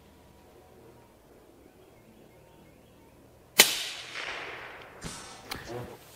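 A single shot from a scoped bolt-action long-range rifle, its report dying away over a second or so, after a few seconds of quiet. Two small clicks follow near the end.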